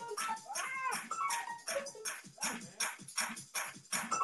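Drum beat playing back from a sampler, with short hi-hat strokes at about four a second. About half a second in, a tone glides up and down in pitch over the beat for roughly half a second.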